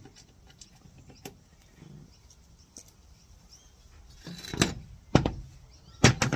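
Small metal clutch parts and washers clicking faintly as they are handled, then a few sharper, louder knocks in the last two seconds.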